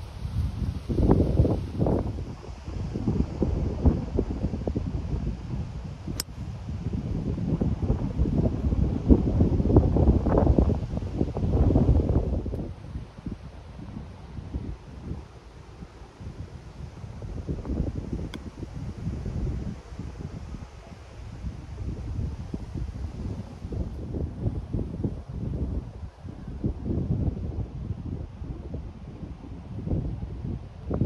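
Wind buffeting the microphone in uneven gusts, a low rumble that swells and fades. A single brief sharp click comes about six seconds in.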